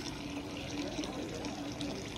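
Water from a flooded air-conditioner emergency drain pan being drawn off through a hose, a steady watery hiss with a faint hum underneath.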